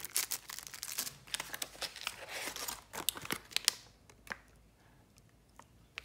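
Clear plastic packaging crinkling and crackling as a shrink-wrapped pack of paint pots is handled, with dense irregular rustles for about four seconds, then only a few faint ticks.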